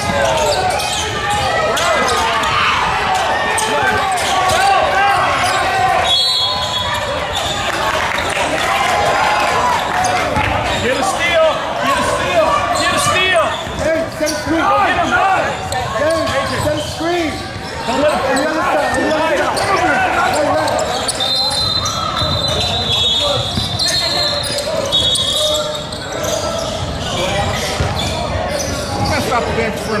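Basketball game sounds in a large gym: a ball bouncing on the hardwood floor, occasional high sneaker squeaks, and indistinct voices of players and spectators calling out.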